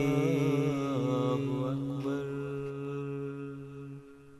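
Intro music: a chanted vocal line with wavering, ornamented pitch over a steady held drone. The voice ends about two seconds in and the drone fades out.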